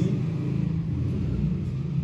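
A steady low rumble, with no speech over it.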